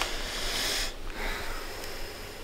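A man breathing out heavily, a breathy sigh of relief lasting about a second, followed by a fainter second breath.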